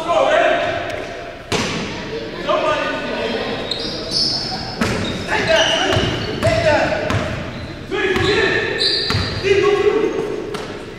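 Basketball game in an echoing gym: a ball bouncing on the hardwood floor as it is dribbled, sneakers squeaking briefly, and players' voices calling out.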